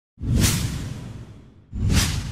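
Two whoosh sound effects with a deep low rumble under a bright hiss. The first swells up about a quarter second in and fades over about a second. The second rises sharply near the end.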